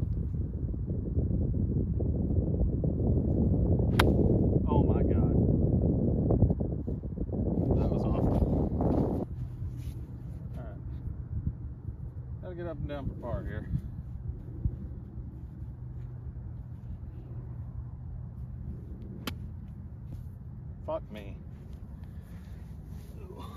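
Wind rumbling on the microphone, with a single sharp click about four seconds in as a golf club strikes the ball on a short pitch shot. The wind eases after about nine seconds.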